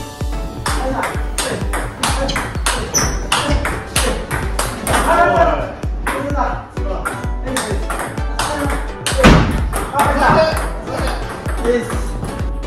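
Table tennis rally of forehand topspin drives: sharp clicks of the celluloid-type ball on the bats' rubber and its bounces on the table, coming in quick, fairly even succession.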